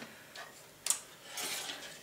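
Plastic model-kit sprue being handled on a cutting mat: a faint click, a sharper click just before a second in, then a short rustle of plastic.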